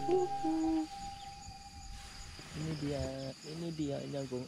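A steady, high-pitched insect trill runs throughout, typical of crickets. The last notes of background music end within the first second, and a man talks quietly from about halfway in.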